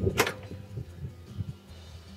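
A sharp knock as a snowblower wheel is pushed back onto its greased axle, followed by a couple of fainter knocks, over steady background music.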